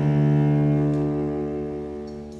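Solo cello played with the bow, holding one long note that slowly fades away.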